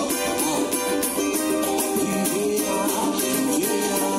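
Cavaquinho strummed in a quick, steady pagode rhythm along with a recorded song that has a singing voice and percussion.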